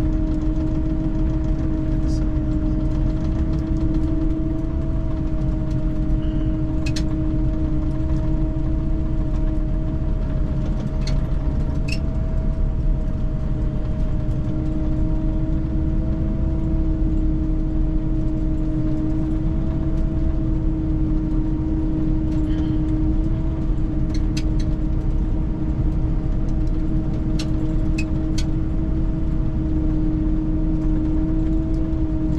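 Snowcat's engine and drive running steadily as it travels, heard from inside the cab: a low drone with a steady whine over it, and a few sharp ticks here and there.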